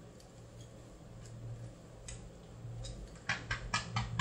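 Automatic 999SN bubble tea cup sealing machine running a sealing cycle on a PP plastic cup with PP sealer film: a low, steady motor hum with faint ticks, then a quick run of about four sharp clicks near the end.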